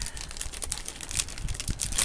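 Clear plastic sleeve on a spiral notebook crinkling as it is handled, a dense run of small crackles and clicks.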